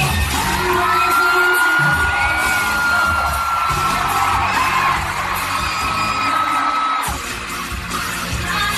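Live concert sound from an audience phone: pop music with a heavy low beat under a crowd's high-pitched screaming, one long held scream running most of the way. It breaks off about seven seconds in.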